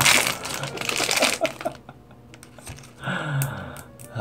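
Foil blind-bag wrapper crinkling and crackling as a small vinyl figure is pulled out of it, busiest in the first second and a half and then settling into light handling.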